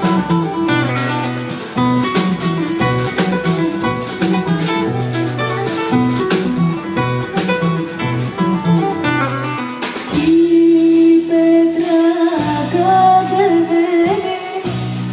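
Live folk music: a long-necked lute plucked with a pick in a quick, rhythmic melody over drums. About ten seconds in, a woman's voice enters with long held notes.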